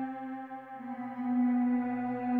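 Ambient meditation music built on a sustained 528 Hz solfeggio drone, a steady hum with ringing overtones like a singing bowl. It dips briefly in the first second and swells back up about a second in.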